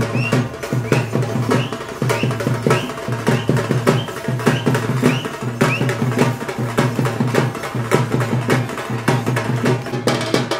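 A group of folk drums slung on shoulder straps, beaten with sticks in a fast, steady, driving rhythm. A short high rising note recurs about twice a second through the first half.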